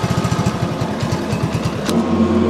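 Four-stroke single-cylinder moped engine idling with an even, steady beat of about a dozen pulses a second. A single sharp click comes just before the end.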